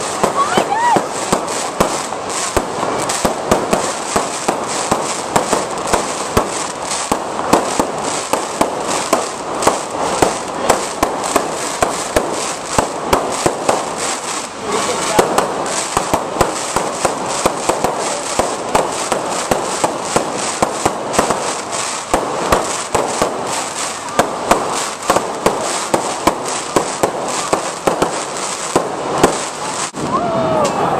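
Aerial fireworks going off overhead in a continuous barrage of sharp bangs and crackles, about two or three reports a second, with no break.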